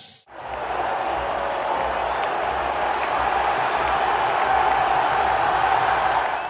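Large arena crowd cheering, a dense, steady wash of many voices that starts a moment in.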